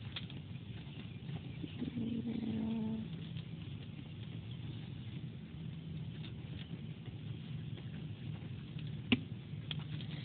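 Fine-nib fountain pen scratching lightly across sketchbook paper as a line of words is written, with small ticks as the nib lifts and lands; the nib is kind of scratchy when writing. A single sharp tick near the end.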